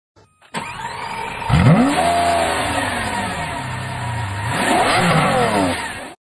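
A car engine revved twice. The pitch climbs sharply about a second and a half in and slowly falls away, then rises and falls again near the end.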